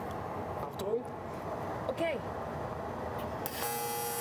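Steady background hum of workshop extraction ventilation, then, about three and a half seconds in, an electric welding arc strikes and runs with a steady hiss and buzz. The sound is called "a very special sound" ("ganz besonderes Geräusch").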